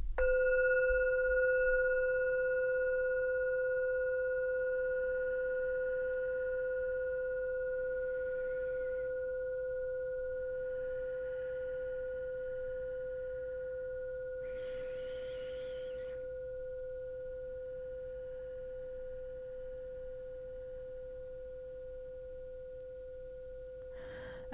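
Metal singing bowl struck once with a wooden mallet, then left to ring. It holds a steady tone with several higher overtones that fades slowly over more than twenty seconds.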